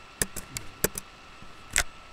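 A handful of sharp, irregular clicks at a computer, keyboard keys and mouse buttons, about six in two seconds, with the loudest near the end.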